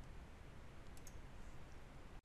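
A computer mouse clicking faintly a few times, the clearest click about a second in, over a low steady hiss.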